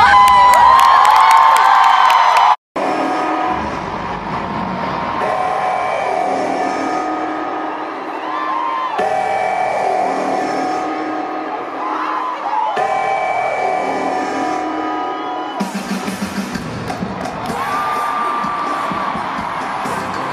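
Live pop concert music in a stadium, a lead singer's voice over the band and backing track, with crowd noise under it at the start. The sound cuts out for a split second about three seconds in, where the footage changes.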